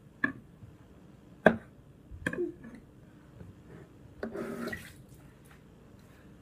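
Scattered sharp clicks and knocks of food and utensils being handled over a foil roasting pan, the loudest about a second and a half in, with a short burst of splashy noise a little past four seconds.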